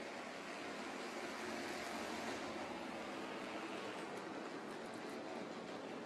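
Bandolero race car engines heard from a distance as a steady wash of noise with a faint hum, no single car standing out.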